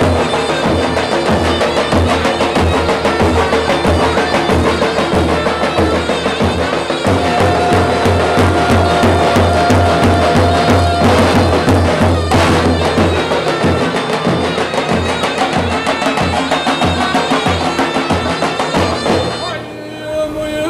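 Davul and zurna playing a lively Turkish folk tune: big double-headed davul drums beaten with wooden mallets in a quick, steady rhythm under a shrill reed melody. The music breaks off just before the end.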